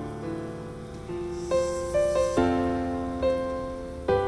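Piano chords from the intro of an electronic trance track, a new chord struck every second or so and left to ring, over a faint rain sound effect.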